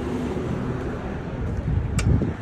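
Steady outdoor background noise with faint traffic. At the very end comes a sharp click as the restaurant's glass door is pulled open by its handle.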